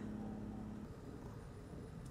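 Quiet background noise with a low rumble, and a faint steady hum that fades out about a second in.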